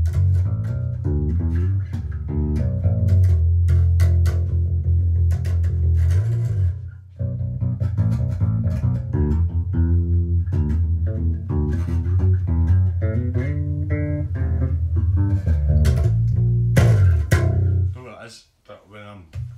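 Five-string electric bass played through a TC Electronic BH250 bass head and a 4x12 cabinet: a run of deep plucked notes with sharp, snappy attacks. It breaks off briefly about seven seconds in, then picks up again and stops suddenly at the end.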